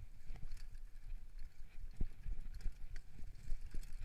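Downhill mountain bike clattering over a rough trail at speed: irregular knocks and thuds from the wheels, chain and frame over a low rumble, the sharpest knock about two seconds in.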